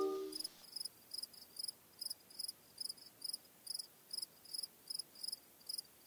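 Crickets chirping in a steady, even rhythm of short high chirps, about two and a half a second. A held music chord fades out in the first half second.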